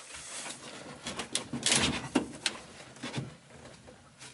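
3D-printed PETG cup-holder insert being forced into a dashboard ashtray slot: plastic scraping and rubbing against the slot's sheet metal and burlap covering, with a few sharp clicks as it goes in.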